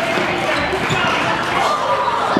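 Reverberant indoor soccer hall din: players and spectators shouting and chattering in the background, with occasional thumps of the ball being kicked on the turf.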